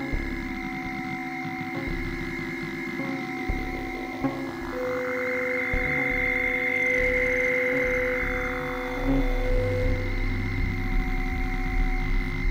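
Improvised jam of analog synthesizers heard through the mixer: several held drone tones with wavering, modulated lines over them. A swell of noise rises and falls in the middle, and a pulsing low bass comes in about three-quarters of the way through.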